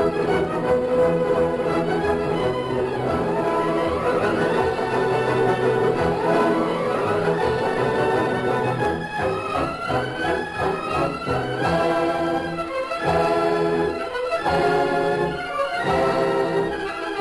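Orchestral music with brass and strings playing at full volume.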